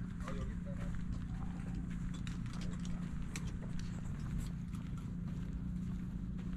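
Outdoor ambience of irregular sharp taps and clicks, likely footsteps, with faint voices of people nearby, over a steady low hum.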